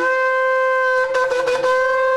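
Two long spiral shofars blown together at the close of Yom Kippur, the last shofar blast of the day. The tone jumps up to a higher note right at the start, then holds it steadily, with a brief sputtering break a little over a second in.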